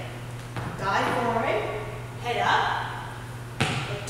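A woman's voice calling out dance cues that the recogniser did not catch, then a single sharp thump near the end, over a steady low hum.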